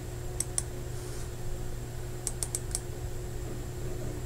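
Light clicks of computer controls: two about half a second in, then four in quick succession a little after two seconds, over a steady low hum.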